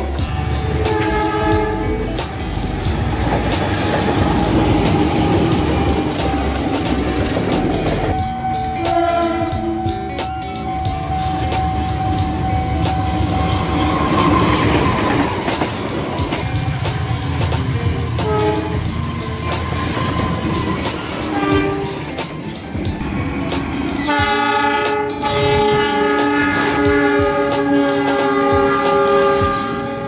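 Diesel-hauled passenger trains passing close by with wheels clattering over the rail joints and a steady rumble. Locomotive horns sound several times, holding steady chords, the longest near the end.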